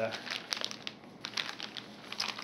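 Clear plastic bag crinkling as it is handled, in irregular crackles.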